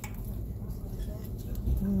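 Low steady rumble from a handheld phone being moved about. Near the end a woman gives a short hummed "mm-mm".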